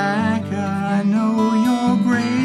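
A man singing a slow, unplugged song to his own strummed acoustic guitar.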